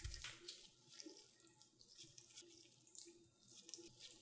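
Faint, wet, sticky handling sounds of gloved hands pleating and gathering a thin sheet of buttered paratha dough on a silicone mat, in soft irregular swishes.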